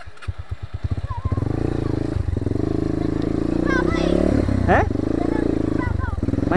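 A dirt bike engine starting: a few slow separate firing beats that quicken over about a second and settle into a steady run. Voices call out briefly over it.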